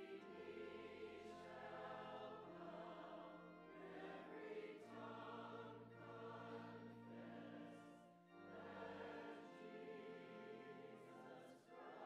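Church choir singing a hymn, heard faintly, over organ accompaniment with long held low bass notes that change every few seconds.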